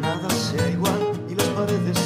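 Two acoustic guitars playing together: a nylon-string classical guitar strums chords in a steady rhythm of about two strokes a second, under a second guitar's picked notes.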